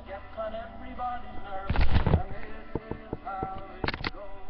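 A girl's wordless, sung voice, then a burst of loud thumps on the webcam's microphone about two seconds in and several sharp clicks after, as the computer is handled and moved.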